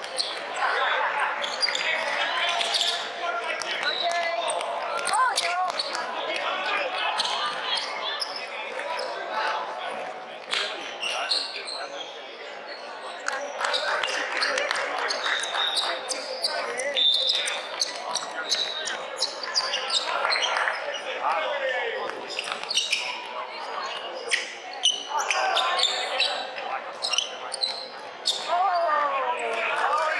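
Basketball being dribbled and bounced on a hardwood court, with sneakers squeaking and players and spectators calling out, all echoing in a large sports hall.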